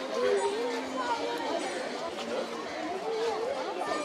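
Background chatter of several people talking at once, an indistinct babble of voices with no clear words.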